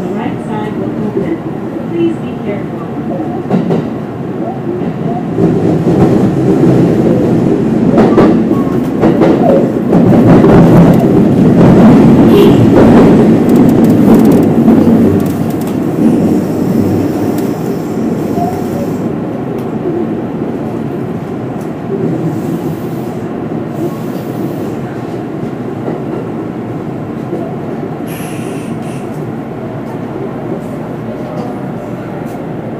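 Kintetsu electric train heard from inside its leading car, running through an underground tunnel. The wheel and motor noise builds to its loudest about ten to fifteen seconds in, then eases off as the train enters an underground station.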